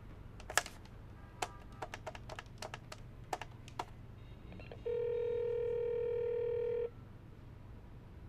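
Corded desk telephone being dialled: a run of sharp clicks as the handset is handled and the keys are pressed, then a steady telephone tone in the earpiece for about two seconds, starting a little past the middle.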